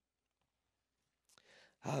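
Near silence for over a second, then a man's short breath just before he starts speaking again near the end.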